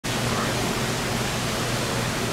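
Steady hiss of an indoor swimming-pool hall: ventilation and pool water make an even, echoing background noise.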